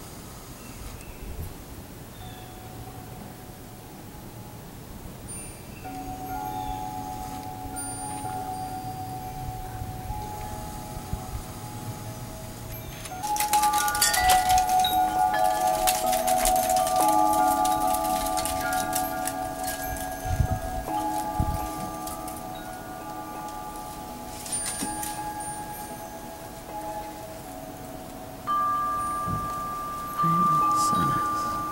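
Wind chimes ringing: a few scattered notes at first, then a flurry of strikes about halfway through, with several overlapping tones ringing on and fading.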